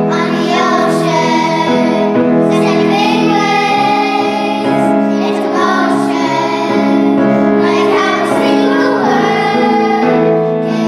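A group of young girls singing a pop song together into microphones, over sustained accompanying notes.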